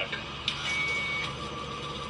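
Sci-fi film sound effects of mechanical whirring over a low rumble, with a click about half a second in and a brief steady high tone just after.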